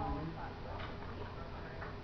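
Cardboard gift box being opened by hand, with a couple of soft clicks as its flaps are pulled back.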